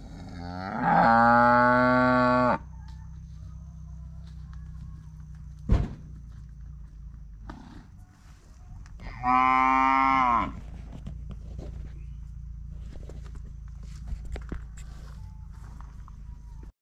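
Cattle mooing twice: a long moo starting about half a second in and lasting about two seconds, and a second, slightly shorter moo about nine seconds in. A single sharp knock sounds between them.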